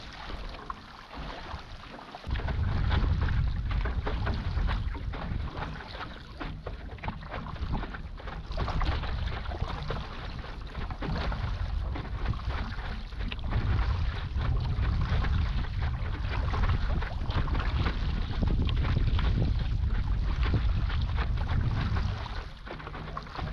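Water splashing and lapping against a moving stand-up paddleboard on choppy sea. Wind buffets the microphone with a low rumble from about two seconds in.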